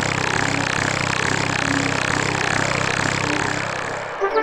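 Steady mechanical whirring hum with an even, regular pulse: the Teletubbies voice trumpet sound effect as the trumpet sinks back into the ground. The sound eases off a little near the end.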